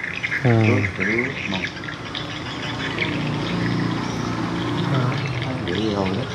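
Water running and splashing steadily, as from a freshly washed garment being handled and hung to dry.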